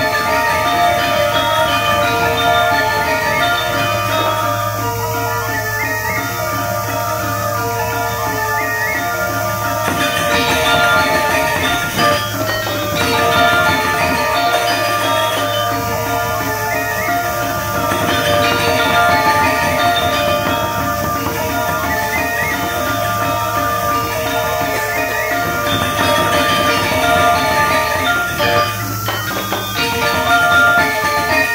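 Balinese gamelan music: bronze metallophones playing dense, fast patterns of ringing struck notes, over a low tone that swells and fades every several seconds, accompanying a dance.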